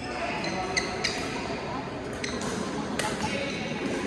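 Badminton doubles rally: a few sharp racket strikes on the shuttlecock, with short high squeaks of shoes on the court mat in between, in a hall that echoes.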